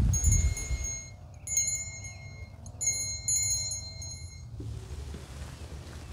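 A small bell, most likely an altar bell, rung in two spells of quick repeated strikes as the chalice is elevated after the consecration, its high bright ring hanging on after each spell. A low rumble sits under the first second.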